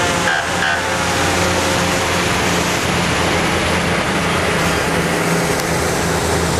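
Antique fire engines driving past at parade pace, their engines running steadily under a constant hiss of tyres on the wet road.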